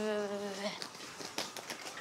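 A man's voice calling out in one long drawn-out vowel, sinking slightly in pitch and breaking off under a second in, followed by faint scattered clicks and taps.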